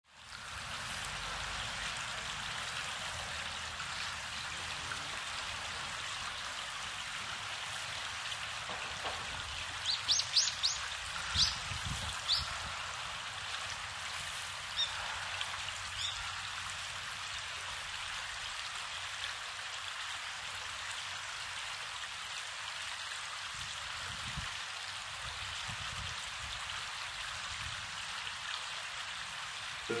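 Steady rush of a shallow river's running water, with a few short high bird chirps about ten to twelve seconds in and again around fifteen to sixteen seconds.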